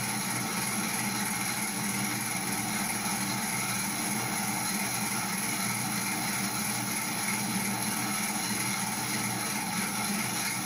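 Small electric-motor-driven rotating machine test rig running steadily: a constant hum with several steady whining tones, some of them high-pitched.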